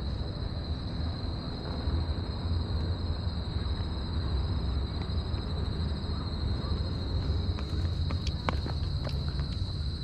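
Wind rumbling on an action camera's microphone outdoors, over a steady high-pitched hum, with a few sharp clicks about three-quarters of the way through.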